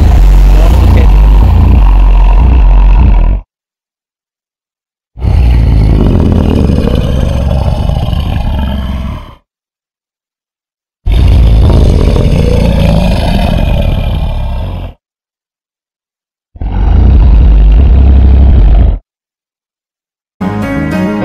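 Four recorded dinosaur roars, each a few seconds long, with a deep rumble under a growl that rises and falls in pitch. Dead silence lies between them.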